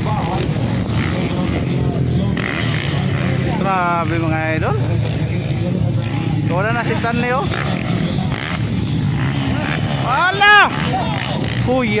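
Motocross dirt bikes running on the track: a steady engine drone with several high revs that rise and fall as riders throttle through the jumps. The loudest rev comes about ten and a half seconds in.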